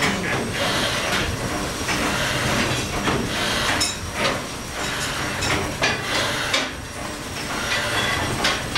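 A ship's multi-cylinder vertical steam engine running, a continuous mechanical clatter with sharp knocks from its moving rods and cranks repeating throughout.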